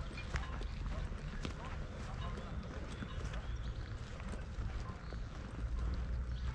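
Footsteps on a dirt path, irregular soft steps, over a steady low rumble of wind on the microphone.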